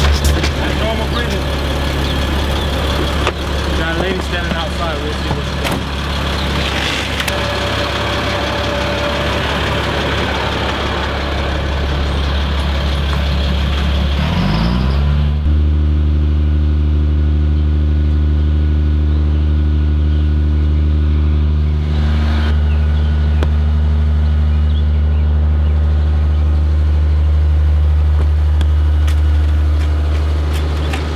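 Fire rescue truck's engine running steadily with a low hum, mixed with other noise in the first half. About halfway through its pitch rises briefly, then holds a steady, even hum.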